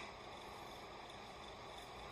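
Quiet room tone: a faint, steady hiss with no distinct sound standing out.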